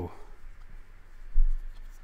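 Baseball trading cards slid and flipped through the hands, a light papery rustle of card stock rubbing card stock, with one dull low thump about one and a half seconds in.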